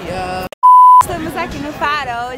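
A loud, pure electronic beep held on one steady pitch for about half a second, starting just after a brief dropout to silence and cutting off sharply; it falls at an edit between two clips.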